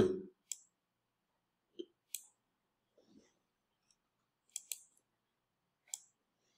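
A few faint computer mouse clicks, spaced out, with a quick double-click a little over four and a half seconds in, as text is selected on screen.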